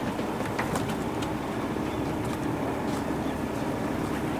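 Parked coach bus's engine idling, a steady low rumble, with scattered clicks and knocks of suitcases being handled.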